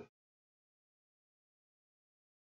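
Near silence, with only the tail of a man's word cut off right at the start.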